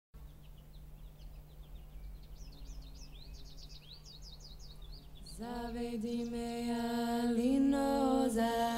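Birds chirping with short repeated calls for about five seconds, then a voice begins singing long held notes in a chant-like style and grows louder.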